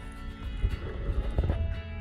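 Background music with steady held tones and a few sharp percussive knocks, over a low rumble.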